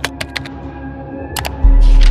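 Intro jingle: keyboard-typing clicks over a steady music bed, then a sudden deep bass hit with a swish about one and a half seconds in.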